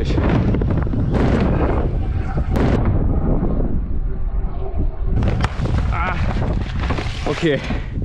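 Stunt scooter wheels rolling fast down a wooden drop-in ramp, with wind buffeting the microphone. The noise drops away about three seconds in as the rider lands on a soft Resi landing ramp, and it picks up again a couple of seconds later as he rolls out.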